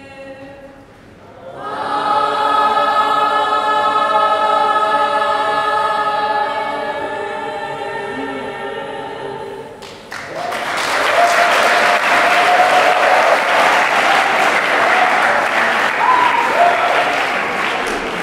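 School choir of boys and girls singing, ending on a long held chord. About ten seconds in the singing stops and the audience applauds loudly.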